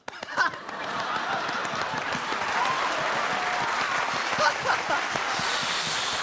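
Studio audience applauding with laughter and scattered cheering voices, starting abruptly.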